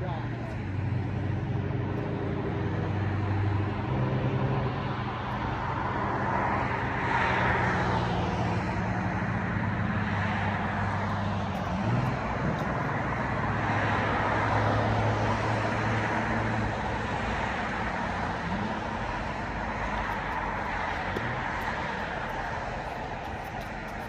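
Road traffic from a nearby road: vehicles passing, the noise swelling and fading several times over a steady low hum.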